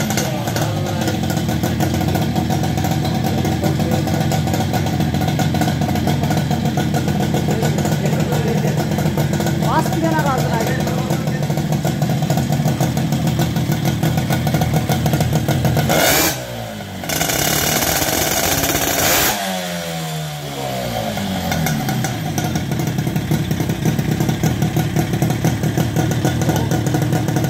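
Custom-built twin-cylinder two-stroke Mobylette moped engine running steadily at idle through its twin exhausts. About two-thirds of the way through the revs briefly rise, then their pitch falls back to idle.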